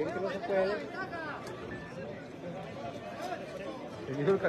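Crowd chatter: several men's voices talking over one another, busiest in the first second and a half.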